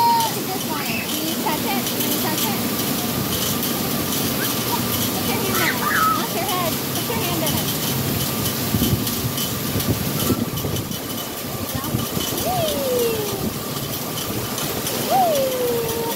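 Splash-pad water jets spraying and splashing in a steady wash of noise, with people's voices and calls in the background.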